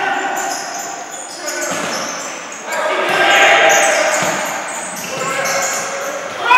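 Futsal play on a wooden indoor court: sneakers squeaking, the ball being kicked and players calling out, echoing in a large hall, loudest about three seconds in.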